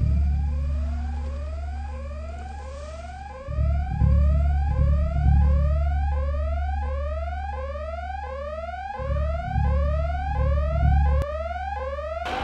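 Electronic red-alert whooping alarm: a tone that rises quickly, repeating about twice a second, over a deep rumble that swells and fades.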